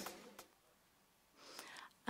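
Near silence as a music track stops, with a faint soft voice sound shortly before the end.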